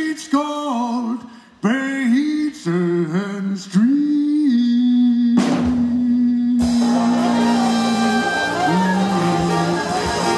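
Live traditional (Dixieland) jazz band: one lead line plays short phrases with sliding, bent notes, then holds a long note. A cymbal crash comes about five and a half seconds in, and the whole ensemble joins about a second later and plays on together.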